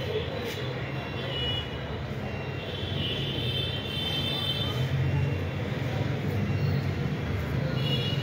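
Steady road traffic noise: a constant low engine rumble under an even hiss, with faint high tones in the middle.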